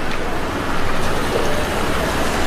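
A car driving slowly on a wet street, its tyres and engine blending into steady city traffic noise.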